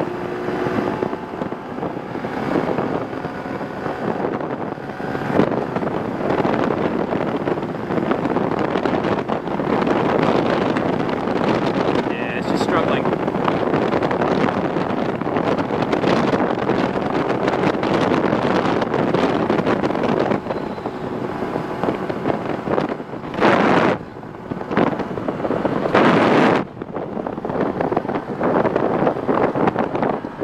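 Wind rushing over the microphone at speed, over the steady drone of a Honda Super Cub 110's single-cylinder engine held at full throttle. Near the end there are two louder surges of rushing noise.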